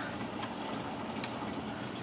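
Steady low background hum of the room, with a couple of faint clicks from items being handled.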